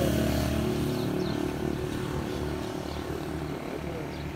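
A motor vehicle's engine running with a steady low drone, fading gradually as it moves away.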